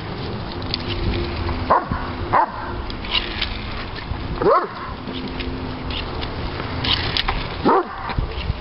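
Doberman pinscher giving four short, high-pitched excited yelps a second or two apart as it jumps and snaps at bubbles. One yelp rises then falls in pitch. A steady low hum runs underneath.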